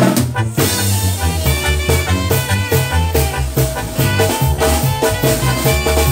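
A tamborazo band playing an instrumental passage without vocals: a horn melody over a bass line and a steady drum beat.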